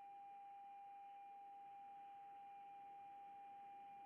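Faint, steady single-pitch electronic tone on a telephone line, unbroken, over a light hiss: the line to the phone guest has dropped.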